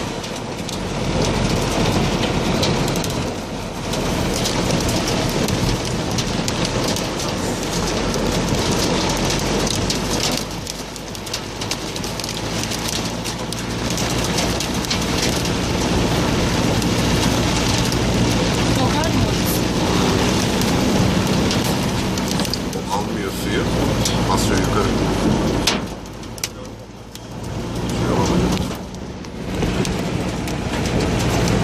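Hail and heavy rain drumming on a minibus's roof and windscreen, heard from inside the cabin, with a steady low running sound underneath. The drumming eases briefly twice near the end.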